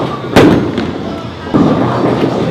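Bowling pins struck by a ball: a loud, sharp crash about a third of a second in with a brief ringing tail, then a second, softer hit about a second later. Bowling-alley voices run underneath.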